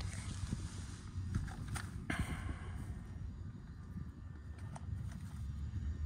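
Footsteps walking across dry grass, uneven soft steps with a couple of sharper rustling clicks about two seconds in, over a steady low rumble.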